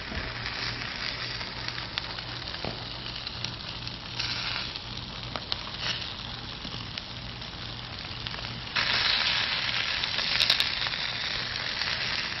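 Chicken wings and legs sizzling on a Weber kettle grill's grate over charcoal: a steady hissing sizzle that grows louder about nine seconds in.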